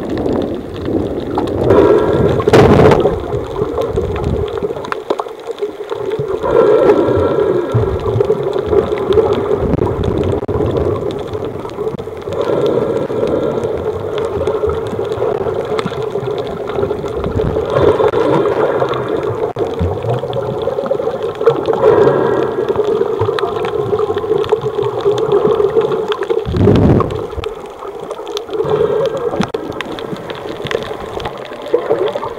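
Muffled water noise picked up through an underwater camera housing, swelling every four to five seconds, typical of a swimmer's breathing and bubbles.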